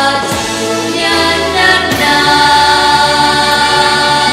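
Children's voices singing a song into microphones over instrumental accompaniment, steady and loud, with several voices together.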